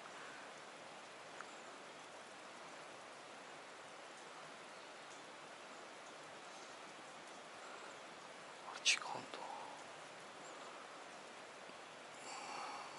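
Faint, steady outdoor background hiss. About nine seconds in there is one short, sharp sound that sweeps quickly down from high to low pitch.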